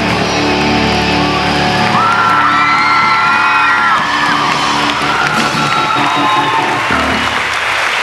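Electric guitar's last chord ringing out through the amplifier as a long steady sustain, with audience cheering over it.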